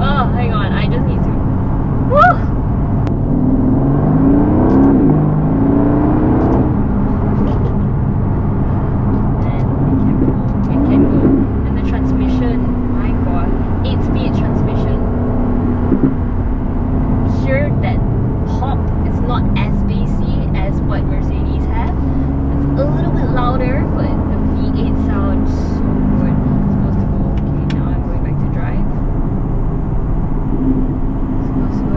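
Aston Martin DB11's 4.0-litre twin-turbo V8, heard from inside the cabin while driving. The engine note rises as the car accelerates about three to seven seconds in and again briefly near eleven seconds, then runs steadier.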